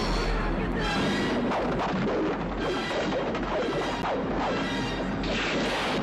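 Film trailer soundtrack: loud music mixed with crashing, smashing and splashing sound effects.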